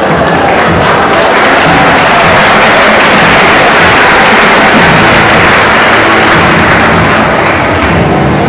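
An audience applauding over loud show music, the applause heaviest around the middle.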